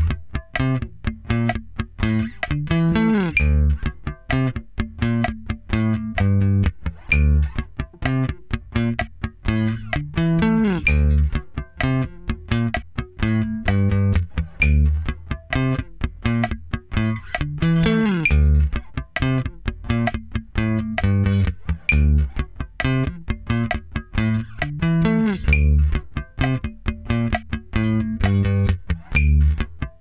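Electric bass played with a pick: a steady sixteenth-note riff mixing plucked notes with muted ghost notes, with a slide up the neck every second bar. The tempo creeps up slowly, from about 64 to 68 bpm.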